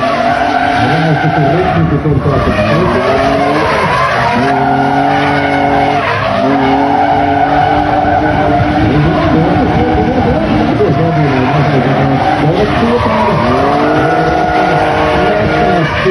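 BMW drift cars' engines revving hard through a tandem drift, the pitch rising and falling again and again with the throttle, over tyres skidding and squealing as the cars slide sideways.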